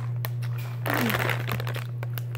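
A plastic candy bag crinkling as it is handled, loudest in a short burst around the middle, over a steady low hum.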